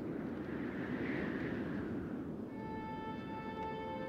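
Film soundtrack opening: a steady, rumbling ambient noise bed, joined about halfway through by a sustained drone of held musical tones.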